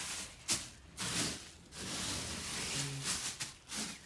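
Faint rustling and hiss in uneven bursts: handling noise from a phone camera being moved around while filming.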